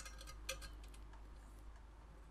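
Faint, scattered small clicks of a nut and screw being handled by fingers, fumbling to get the nut onto a bed-mounting screw from beneath the bed.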